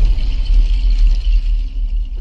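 Intro sting sound design: a loud, deep bass rumble with a faint high shimmer above it, easing slightly near the end.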